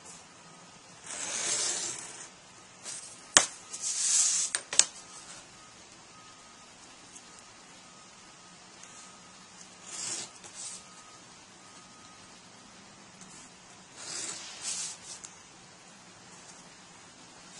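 Hobby knife blade drawn along a steel ruler, scoring and cutting cardstock: four short scratchy strokes a few seconds apart, with two sharp clicks in the second stroke.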